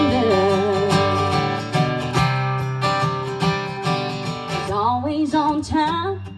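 A woman singing a country song to her own strummed acoustic guitar: she holds the last note of a line with vibrato for about a second and a half, the guitar chords carry on alone, and her voice comes back in a rising phrase near the end.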